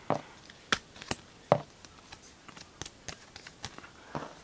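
Trading cards and plastic card holders being handled on a tabletop: a few sharp clicks and taps in the first second and a half, then fainter ticks.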